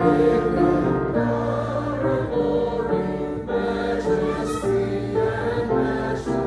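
A church congregation singing a hymn together, holding each sung note and moving to the next about every half second to a second.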